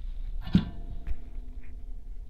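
Handling noise at a workbench: one sharp tap about half a second in and a softer one about a second in, over a low steady hum.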